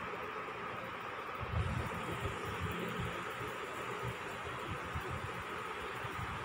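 Steady background hiss with a faint, steady high-pitched tone running through it, and soft, irregular low rumbles.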